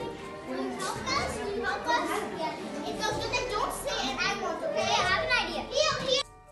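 A group of young children's voices chattering and calling out excitedly over one another, with louder high-pitched calls near the end.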